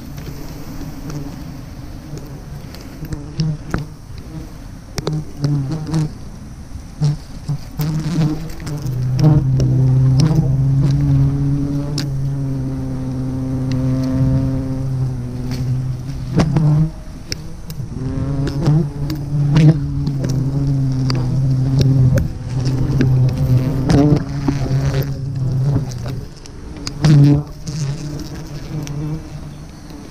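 A swarm of wild honeybees buzzing close by, stirred up by smoke blown at their nest: a loud, wavering drone that swells in the middle and fades toward the end. Scattered short clicks and rustles of branches being handled.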